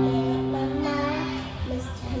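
A chord on a portable electronic keyboard, held and slowly fading, with a young girl singing softly over it. A few lower notes change about one and a half seconds in.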